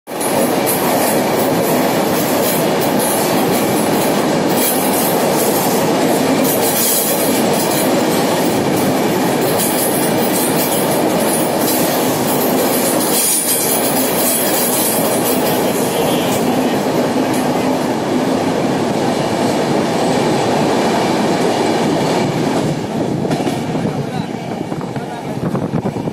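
Deccan Express passenger train running through a tunnel: a loud, steady noise of wheels on rails, made louder by the enclosed space. It drops noticeably near the end as the train comes out into the open.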